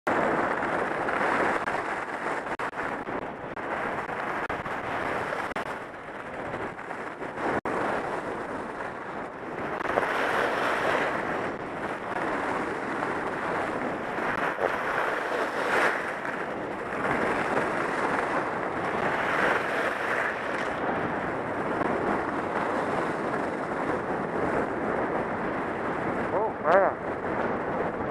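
Skis hissing and scraping over groomed hardpack snow during a downhill run, mixed with wind rushing over the helmet camera's microphone, swelling and easing with the turns.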